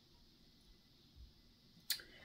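Quiet room tone while small drop earrings are handled by the fingertips, with a faint soft bump about halfway through and one sharp click near the end.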